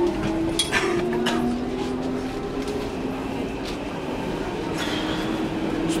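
Interior of a Berlin S-Bahn train carriage: the train's steady hum and whine, with a few clicks and knocks from the carriage.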